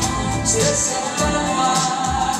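A woman singing held notes into a microphone, amplified over musical accompaniment with a steady beat.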